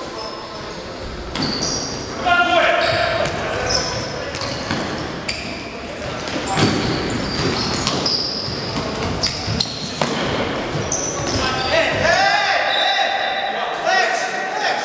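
Futsal game on a wooden gym floor: the ball kicked and bouncing in sharp knocks, sneakers squeaking, and players shouting to each other, all echoing in the large hall. A louder drawn-out shout comes near the end.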